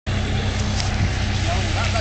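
Heavy diesel vehicle engine idling steadily, from a garbage truck or a backhoe standing close by.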